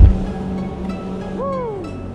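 A chairlift unloading at the top terminal. The skis thump down onto the snow of the unload ramp as the skier gets off, over the steady low hum of the lift machinery. A short call falls in pitch about a second and a half in.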